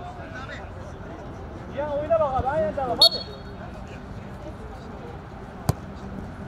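A man shouting on the pitch about two seconds in, cut by a short, high referee's whistle blast about three seconds in, then a single sharp kick of a football near the end.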